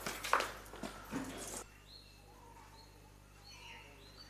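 A few brief scuffling noises end suddenly with a cut. Then faint bird calls follow: short clear whistled notes, some high and some lower, repeating every second or so, with one rising chirp near the end.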